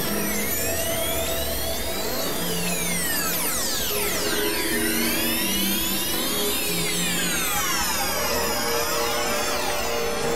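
Experimental electronic music: many high synthesized tones glide up and down in pitch at once, over short held lower notes that change every second or so, on a dense, noisy, drill-like bed.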